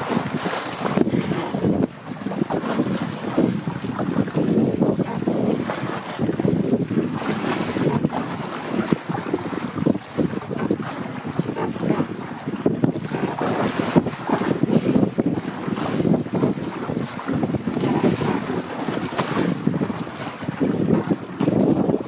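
Wind buffeting the microphone in uneven gusts, over water rushing and splashing along the plastic hull of a WindRider 16 trimaran under sail.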